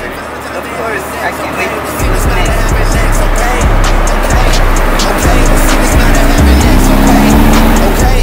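Car sound of a C8 Corvette driving, with hip-hop music coming in about two seconds in on a heavy, pulsing bass beat. Near the end a rising tone runs over the beat.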